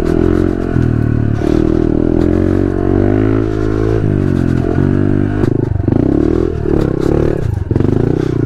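Honda CRF110F's small single-cylinder four-stroke engine, fitted with an aftermarket exhaust, revving up and down under short bursts of throttle on a slow, rough trail. The pitch rises and falls repeatedly, with quick on-off blips in the second half.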